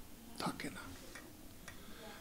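A pause in a man's speech: a brief faint mouth sound from him about half a second in, and a faint click near the end, over quiet room tone.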